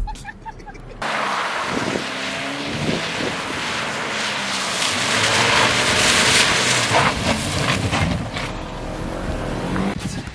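Toyota Corolla hatchback driving round a wet skid pad: a steady hiss of tyres throwing water, with the engine faint beneath it. It starts about a second in, swells to its loudest around the middle as the car comes close, then eases off.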